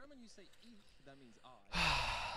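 A man's heavy, breathy sigh into a close microphone, starting near the end, after faint background speech.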